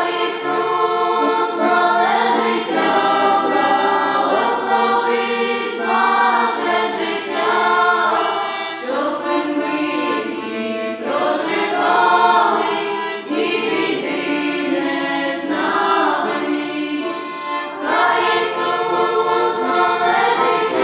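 A group of women and men singing a Ukrainian Christmas carol (koliadka) together, with button accordion accompaniment.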